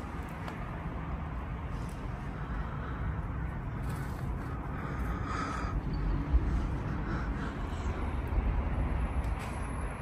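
Outdoor city background: a steady low rumble of distant traffic, footsteps on littered ground, and a short bird call about five seconds in.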